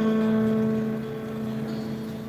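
Live band instruments holding one steady chord that slowly fades, the opening pad under the song's introduction.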